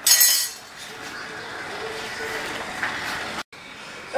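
A brief metallic clink of steel cookware right at the start, then low kitchen room noise; the sound cuts out for an instant near the end.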